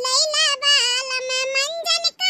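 A high-pitched cartoon character's voice talking in a drawn-out, sing-song way, almost without a break until a short gap near the end.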